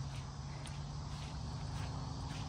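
Quiet open-air background with a steady low hum and a faint, unsteady low rumble, and a few soft faint ticks.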